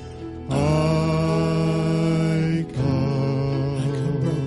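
Church worship band playing a slow song, with a male singer holding long sustained notes: one from about half a second in, then a second just before three seconds.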